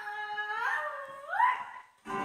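A young child's voice singing one drawn-out note that slides upward twice, ending on a high pitch before it trails off.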